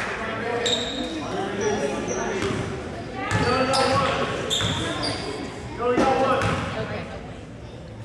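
A basketball bouncing on a hardwood gym floor, a few sharp knocks as the free-throw shooter dribbles at the line, among echoing voices in the gym, with a few short high squeaks.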